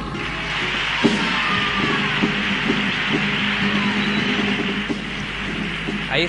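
Theatre audience applauding once the comparsa's singing stops, a steady even clatter of hands, with a rhythmic beat of short strokes underneath and one sharper knock about a second in.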